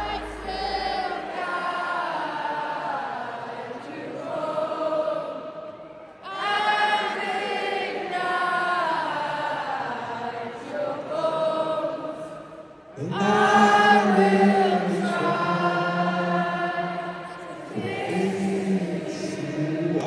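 A stadium crowd singing a melody together in long sustained phrases, with the voices of people close by among them. The phrases break briefly about six seconds in and again past halfway.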